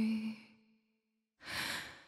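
A piano chord dies away within the first half second, then silence, then a short breath near the end.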